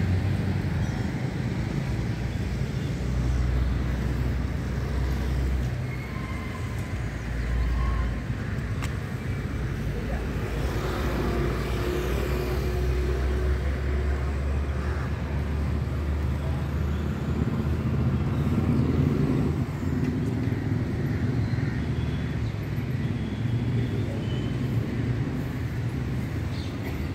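Street noise: a steady low rumble of road traffic on the open microphone, with a few faint short high tones now and then.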